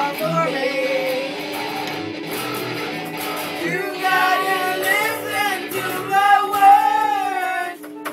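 Boys singing along over electric guitar music, with the singing louder and clearer in the second half.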